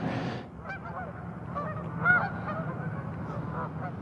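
A flock of geese honking in flight: many short calls, overlapping and irregular, over a low steady background hum.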